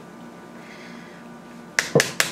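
Quiet room tone, then near the end two sharp clacks of a metal spoon knocking against a steel pot.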